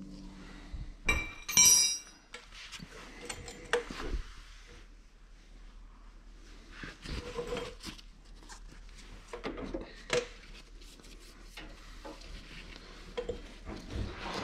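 Steel open-end wrench clinking against steel hydraulic coupler fittings. The loudest ringing clink comes about a second and a half in, followed by scattered lighter taps and handling noise as the coupler is worked loose.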